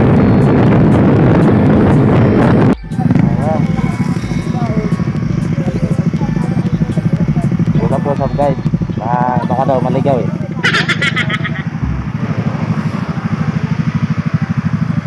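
Motorcycle riding noise with wind on the microphone, cutting off abruptly about three seconds in. After that a motorcycle engine idles with a steady low pulse while people talk over it.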